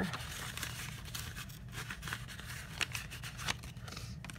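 Paper banknotes rustling and crinkling as they are handled and slipped into a paper cash envelope, with many short light crackles and clicks.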